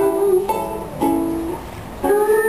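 Ukulele played live: a held note ends about half a second in, then two strummed chords about half a second apart ring out and die away.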